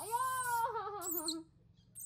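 Newborn baby macaque giving a single high, whimpering coo that rises briefly, then wavers downward in pitch for over a second before stopping.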